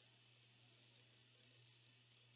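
Near silence: room tone with a faint steady low hum and hiss.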